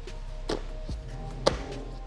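Thuds of feet landing during a box jump onto a stacked foam plyo box and back down onto the rubber gym floor. The loudest comes about a second and a half in, over background music with a steady bass.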